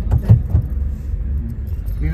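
Inside a car: a steady low engine and road rumble, with a few short clicks and knocks in the first half-second.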